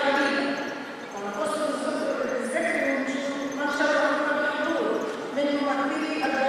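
A woman's voice speaking steadily into a microphone, amplified through the hall's public-address system.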